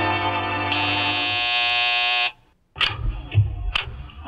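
Organ music bridge: held chords that change to a brighter chord about half a second in and cut off a little after two seconds. A few sharp knocks and low thumps follow near the end.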